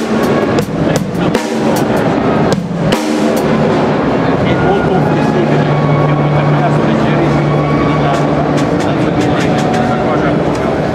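Drum kit struck by the seated drummer: a run of sharp hits in the first three seconds. After that comes a loud, dense din of voices and other drumming in a crowded hall.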